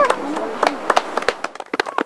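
A run of irregular sharp clicks or taps, with voices trailing off in the first half second and the sound growing quieter through the rest.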